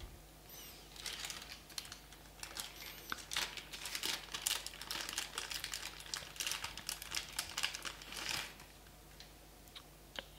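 Dense crinkling and light clicking of a small plastic figure and its packaging being handled. It starts about half a second in and stops about a second and a half before the end.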